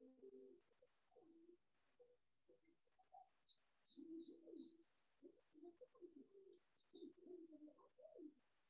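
Faint dove cooing, in several short low phrases, with four short high peeps about halfway through.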